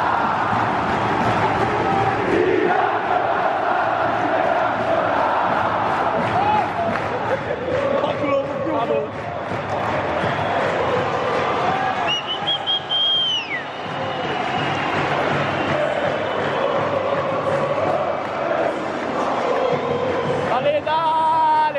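Stadium crowd of football supporters singing and chanting together, loud and steady. About two-thirds of the way in, a high whistle sounds for over a second and slides down in pitch as it ends.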